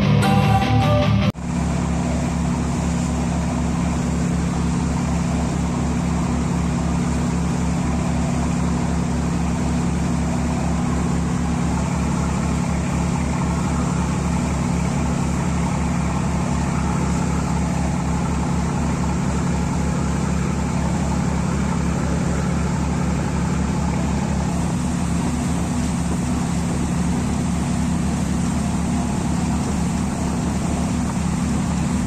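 Pilot boat's engines running steadily underway, a constant low drone with the hiss of water and wind over it. A short music sting cuts off about a second and a half in.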